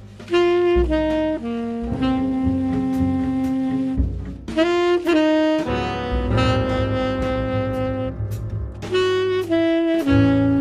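Live jazz: a tenor saxophone plays a slow melody of long held notes, with piano and low bass notes beneath.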